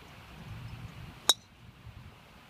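A golf driver striking a golf ball off the tee: one sharp, loud click with a brief metallic ring, a little over a second in.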